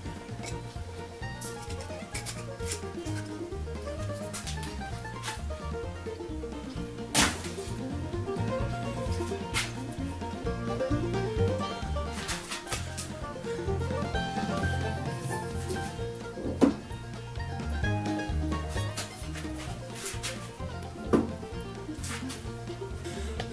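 Background music with a stepping bass line and a wandering melody, with a few sharp knocks.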